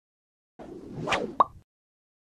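Logo-animation sound effect: a short swelling whoosh that peaks about a second in, followed by a sharp pop, all over in about a second.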